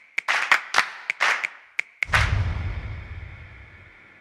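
Title-card sound effects: a quick run of snappy pops and swishes, then a deep boom about two seconds in that fades away.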